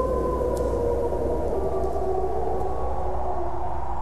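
Wolves howling: long, slowly falling notes overlapping one another, over a low steady drone.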